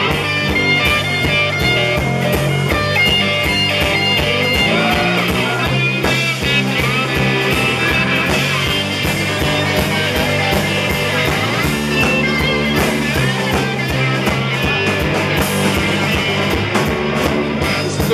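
Live rock band playing an instrumental break: an electric guitar lead over bass and a steady drum beat.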